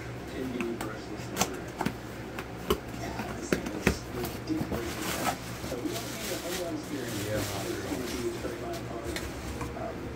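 Small cardboard box being opened and handled by hand: a few sharp clicks and knocks from the flaps in the first four seconds, then the rustle of a plastic-wrapped part being lifted out.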